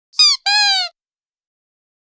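An intro sound effect of two squeaky calls: a short high one, then a longer, lower one, each falling slightly in pitch.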